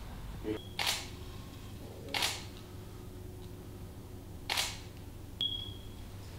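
Three short, sharp clicks spaced a second or two apart, with a brief high-pitched beep just before the first and another near the end, over a faint low hum.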